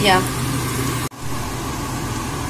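Steady whirring fan hum with a constant low drone and a faint higher tone, cut off by a sudden brief dropout about a second in before it resumes.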